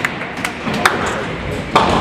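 Ninepin bowling ball rolling down a wooden lane with a low rumble after release, with a sharp click a little under a second in and a louder knock near the end.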